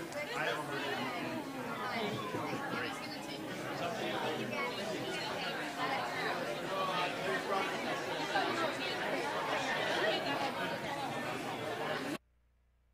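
Crowd chatter: many people talking at once, overlapping conversations with no single voice standing out.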